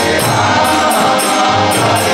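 Harmonium playing the chords of a harinam (kirtan) melody, with voices singing along. A steady beat of high, bright strikes runs about three times a second.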